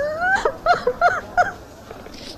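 A woman crying: one rising wailing cry, then four short high sobs in quick succession.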